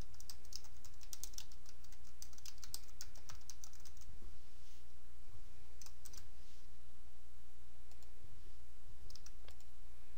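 Typing on a computer keyboard: a quick run of keystrokes over the first four seconds or so, then a few scattered clicks later on, over a steady low hum.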